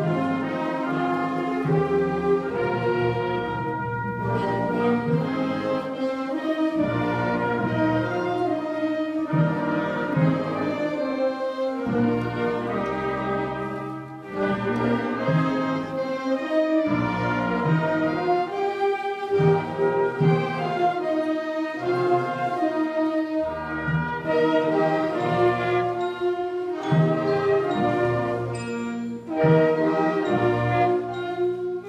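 Middle-school concert band playing a piece, with clarinets, saxophones and brass sounding together. The level dips briefly about halfway through before the full band comes back in.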